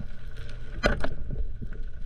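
Speargun fired underwater at a hogfish: a sharp crack a little under a second in, followed by a second sharp knock about a second in as the shaft strikes. Underneath, a steady low underwater rush with scattered small clicks.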